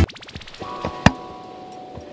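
Camcorder/VHS-style transition sound effect: the intro music cuts off into a quick rattle of clicks, then a single sharp click about a second in, with faint steady electronic tones.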